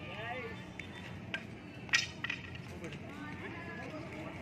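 Rattan arnis sticks clacking in a few sharp strikes: one a little past a second in, the loudest about halfway through, then two quick lighter ones right after.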